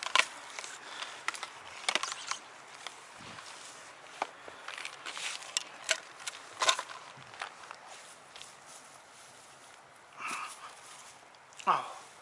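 Scattered rustles and light clicks as a landing net holding a small carp is carried up a grassy bank and set down, with footsteps in grass. A brief wordless voice sound comes near the end.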